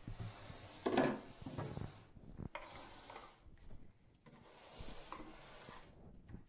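Rubbing and scraping against wood in several stretches, with a louder knock or scrape about a second in.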